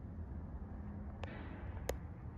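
Quiet room tone with a low steady rumble. There are two short clicks: a small one just past a second in, and a sharper, louder one near the end.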